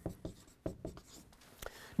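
Faint sounds of writing by hand: a run of short, irregular taps and scratches of a writing instrument on a surface.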